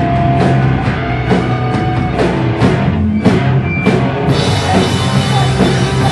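Live hardcore band playing loud: distorted electric guitars and bass over a drum kit, the cymbals and drums hitting about twice a second. About four seconds in, the sound suddenly becomes fuller and brighter.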